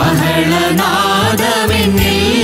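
A small group of women and men singing a Malayalam Christian worship song into microphones, with electronic keyboard accompaniment and a bass line moving between held notes.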